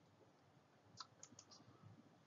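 Near silence with a few faint, short clicks starting about a second in.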